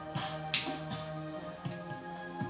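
Background music of steady held tones, with a few short sharp clicks; the loudest click comes about half a second in.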